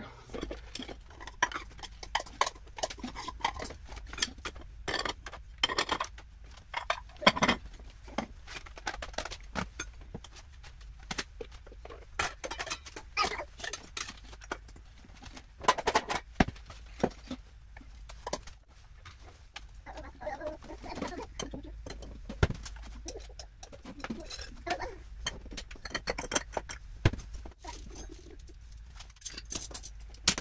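Dishes and cutlery being put away by hand: irregular clinks and clatters of plates, cups and silverware set down on the counter and into cabinet shelves.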